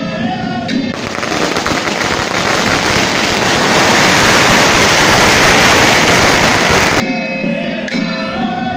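A string of firecrackers going off in a rapid, continuous crackle, starting about a second in, growing louder, then cutting off suddenly near the end. Music plays before and after the burst.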